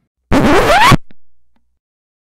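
A loud, short scratch-like transition sound effect whose pitch sweeps upward. It lasts under a second, starts about a third of a second in, and is followed by a brief fading tail.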